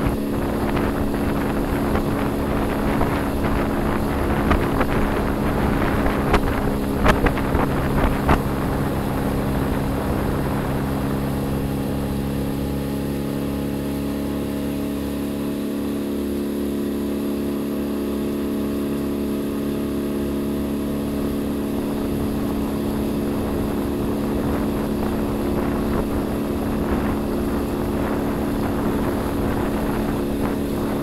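Small boat's outboard motor running at a steady speed, with wind on the microphone. There are a few sharp knocks about seven to eight seconds in.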